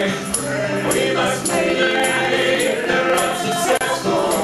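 Live band music with several voices singing together: upright bass, acoustic guitar and drums, with a tambourine jingling on the beat a few times a second.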